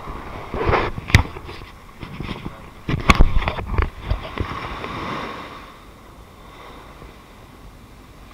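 Handling noise on a body-worn action camera: a few sharp knocks and scraping rustles as it is bumped and swung, the loudest a little after one second and around three seconds in, then a faint hiss of wind and surf.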